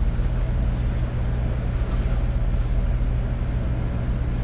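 Steady low hum with an even hiss over it: the classroom's background noise, unchanging throughout.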